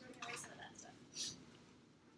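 Faint, indistinct whispered or off-microphone talk, with a few short soft noises and a brief hiss about a second in.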